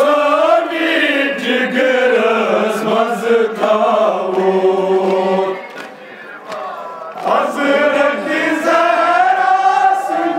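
A group of men chanting a Kashmiri noha, a Muharram mourning lament, in long held lines. The chant falls away about six seconds in and rises again about a second later.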